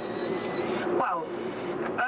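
Speech: a person talks briefly over a steady background hum with faint high, steady tones.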